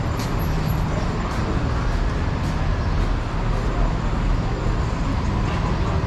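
Steady city street traffic noise: a continuous low rumble of engines and tyres.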